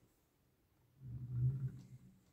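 Wheels of a 1/50 diecast Demag AC-100 crane model rolling across a wooden tabletop, a low rumble that starts about a second in and fades as the model rolls away.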